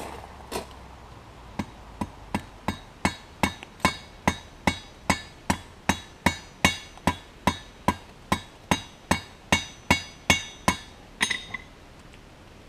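Hand hammer striking hot steel on an anvil, forging the end of an old file into a small fish hook. The blows come in a steady run of about two and a half a second, each with a bright ring from the anvil, and break off with a few lighter taps near the end.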